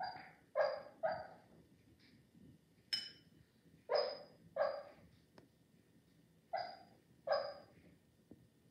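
A dog barking in her sleep: about eight short, soft woofs, mostly in quick pairs, with one higher, thinner one about three seconds in.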